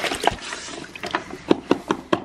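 Hand scrub brush swishing and splashing through a tub of water, rinsing horse grooming brushes, with a run of sharp, irregular clacks in the second half as the brushes knock together and against the plastic tub.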